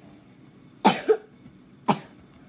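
A child coughing twice: a two-part cough about a second in and a short, sharp one near the end.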